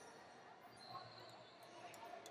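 Near silence: faint ambience of a large sports hall, with distant voices.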